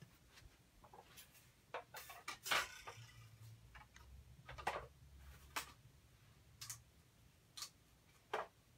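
About ten light, scattered clicks and taps as a cutting plate and thin metal cutting dies are handled and set down while dinosaur shapes are laid out for die cutting.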